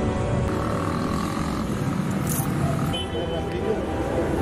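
Street traffic noise: cars running nearby, with voices in the background.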